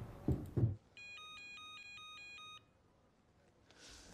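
Electronic ringing tone of a video-conference call connecting: a rapid warble alternating between two pitches. It starts about a second in and lasts about a second and a half.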